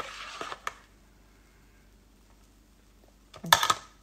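Metal spoon scraping and clicking in a round cake tin of airy whipped bird's-milk cake mixture: a short bout right at the start and a louder one near the end.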